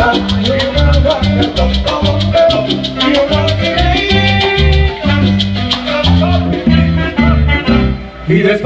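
Live salsa band playing: a rhythmic bass line under a fast, steady tick of high percussion, with congas and saxophone. The music dips briefly in loudness at the very end.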